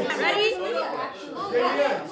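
Several people talking over one another in casual table chatter.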